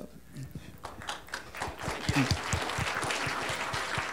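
Audience applauding: a few scattered claps at first, swelling into steady clapping about a second and a half in.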